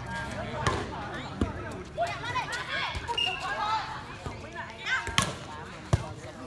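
Several sharp hits of a light inflatable volleyball during a rally, the loudest two coming near the end, over spectators talking and calling out.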